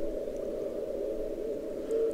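Shortwave receiver noise heard through a narrow CW filter on the 40 m band. A weak Morse code signal, received on a Pixel loop (MFJ-1886) antenna, has faded into the noise. Its keyed tone comes back near the end on a QSB (fading) peak.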